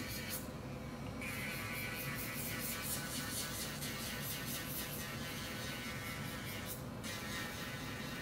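Portable electric nail drill with a bell-shaped bit running steadily with a high buzzing whine as it files the surface of dip powder nails. The higher, gritty part of the sound drops out briefly twice.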